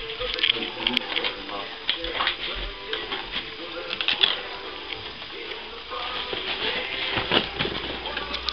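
Crinkling and small clicks of gift wrap and packaging being handled, with faint music and low voices underneath.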